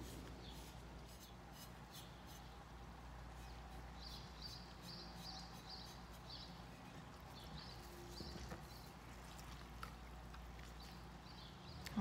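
Faint, soft rubbing of a damp sponge wiping over unglazed ceramic bisque in short repeated strokes, lifting off watered-down paint, over a low steady hum.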